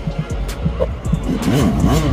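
Dirt bike engine revving up and down as the bike approaches, its pitch rising and falling several times, with music playing over it.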